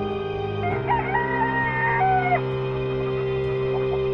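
A rooster crows once, starting about half a second in and lasting under two seconds, over steady background music.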